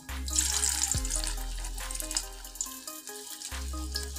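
Cabbage cutlet deep-frying in hot oil in a kadai: a steady sizzle of bubbling oil, with background music playing over it.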